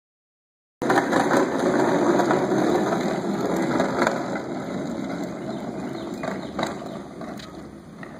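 Hard plastic wheels of a toddler's push-along ride-on toy car rolling over a concrete driveway: a continuous rattle made of many small clicks, starting about a second in and fading as the toy rolls away.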